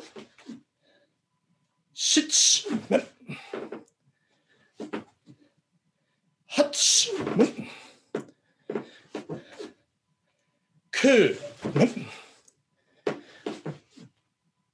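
A man's kiai shouts of "men!" as he strikes with a bamboo shinai during a set of men-strike practice swings. There are three loud shouts about four to five seconds apart, each with shorter voice sounds after it, and silence between them.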